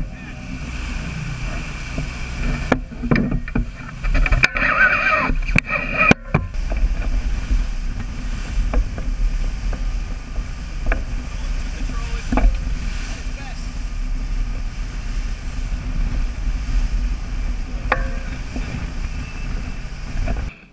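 A sportfishing boat's engines running under way, a steady low drone under the rushing water of the wake.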